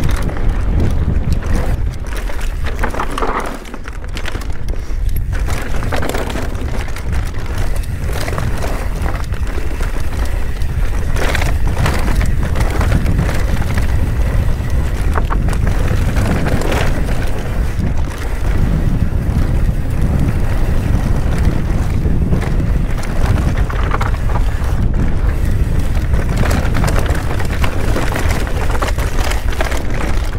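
Mountain bike descending a dirt singletrack at speed: steady wind rumble on the action camera's microphone, with tyre noise on the trail and scattered knocks and rattles from the bike over bumps.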